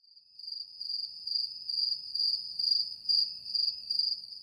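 Cricket chirping in a steady, pulsing trill at one high pitch, starting abruptly out of silence just after the beginning.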